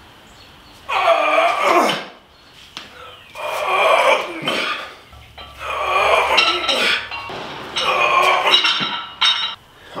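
A lifter doing barbell muscle snatches, breathing out hard with each of four reps about two and a half seconds apart, while the loaded bar's plates clink and knock.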